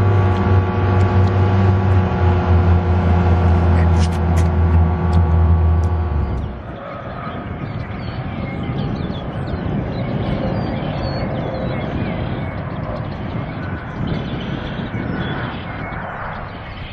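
A loud, steady mechanical hum with a low drone and a run of higher tones beneath it, with a few sharp clicks about four seconds in. It cuts off suddenly about six and a half seconds in, and a quieter, even outdoor rush of wind and passing traffic follows.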